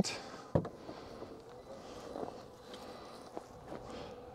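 Power liftgate on a Jeep Grand Wagoneer L opening from the key fob: a sharp click as the latch releases about half a second in, then a faint steady motor hum as the gate rises.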